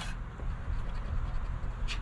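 A metal coin scratching the coating off a scratch-off lottery ticket, uncovering the next number.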